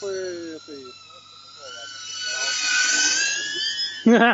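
DJI Avata FPV drone's ducted propellers whining, rising in pitch and getting louder as it throttles up about two seconds in, then easing off near the end.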